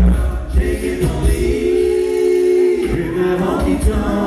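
An a cappella vocal group singing live through microphones and a PA. In the middle the voices hold a close-harmony chord while the low bass drops out, and the bass comes back in about three seconds in.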